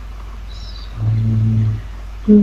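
A man's voice holding one long, level-pitched hesitation sound for under a second, about a second in, over the call audio's steady low electrical hum.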